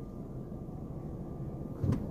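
Car cabin noise while driving: a steady low rumble of engine and road, with a brief knock near the end.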